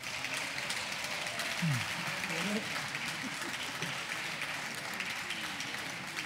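Applause from deputies in a parliament chamber: steady hand clapping with no break, with faint voices underneath.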